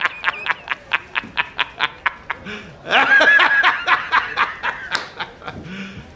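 A man laughing hard, a film clip used as a reaction meme: a rapid run of short 'ha' bursts, about six a second, then a longer drawn-out laugh about three seconds in, and more bursts that fade toward the end.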